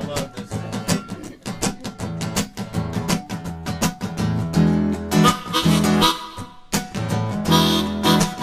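Acoustic guitar strummed in a steady rhythm to open a song, with a harmonica joining in held notes about halfway through.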